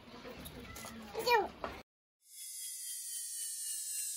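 Faint outdoor background with one short, high call with falling pitch a little over a second in, cut off abruptly into silence. From about halfway a high shimmering whoosh swells in, the transition effect of an animated end-screen.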